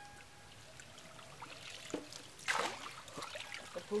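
Wet fish being scooped out of a net with plastic bowls: water trickling and dripping, with a short, louder splash about two and a half seconds in.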